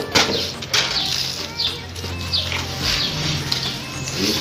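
Birds chirping in short, repeated falling notes over a low steady hum, with a few sharp knocks, the loudest near the start and about three quarters of a second in.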